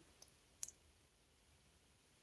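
Near silence: room tone, with two faint short clicks in the first second.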